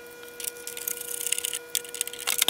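Light, irregular clicks and scrapes of a screwdriver being worked at the screws under an oscilloscope's plastic carrying handle. A faint steady tone runs underneath.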